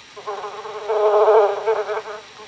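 Bee-like buzzing, the 'happy buzz' a bee makes on a flower: one steady, slightly wavering hum that swells in the middle and fades near the end.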